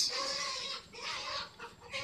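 Chickens clucking, a longer call in about the first second followed by a few softer clucks.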